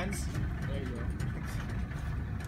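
Boat motor idling with a steady low rumble, with faint voices over it.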